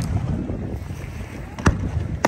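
Aerial fireworks shells bursting overhead: a loud sharp bang right at the start and a second bang about a second and a half later, with a low rumble between them.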